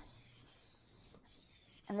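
Faint, steady scrubbing on a stained hardwood surface as a cleaner is worked into the crevices to lift built-up grime and old polish.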